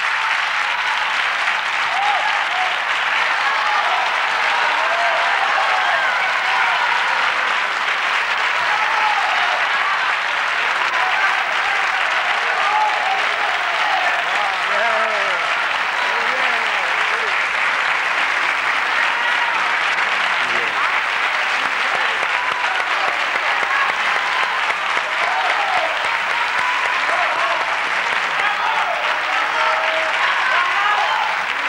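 Studio audience applauding steadily, with voices heard over the clapping.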